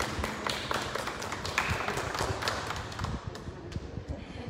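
A small group of people clapping: a round of irregular, overlapping claps that thins out near the end.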